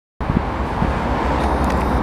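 Road traffic at close range: vehicle engines and tyres with a steady low rumble.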